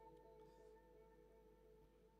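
A faint held musical drone, a steady chord of a few notes with no change in pitch, slowly fading away.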